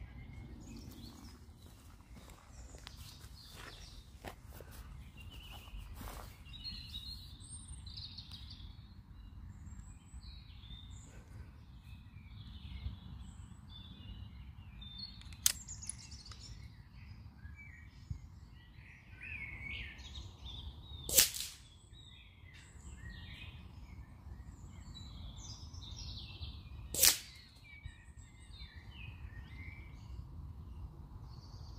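Two shots from a .22 Brocock Sniper XR pre-charged pneumatic air rifle, each a single sharp crack, about six seconds apart in the second half. Birds chirp and sing steadily underneath.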